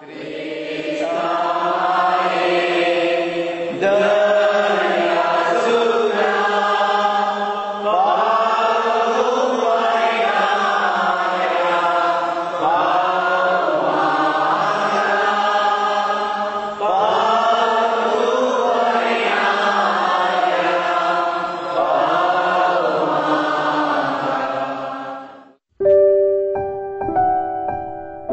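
A congregation singing a hymn together, many voices in repeated phrases about four seconds long. The singing breaks off abruptly near the end.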